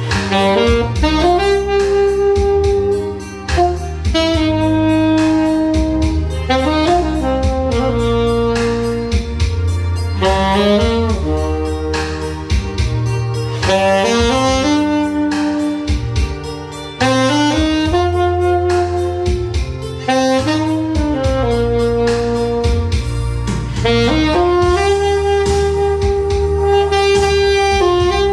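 Saxophone playing a slow, sustained melody in phrases, with brief pauses between them, over a recorded accompaniment with a steady bass and drum beat.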